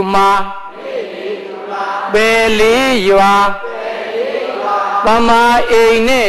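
A Burmese Buddhist monk chanting in long, held phrases that rise and fall in pitch, with quieter stretches between the phrases.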